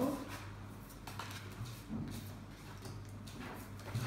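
Board-game cards being laid down on a tabletop one after another: a few faint taps and slides over a low steady hum.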